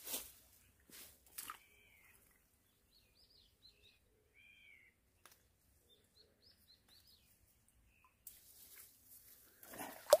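Near silence with faint, high bird chirps repeating through the middle of the stretch, and a few short rustles from hands working in the weeds near the start and around the middle.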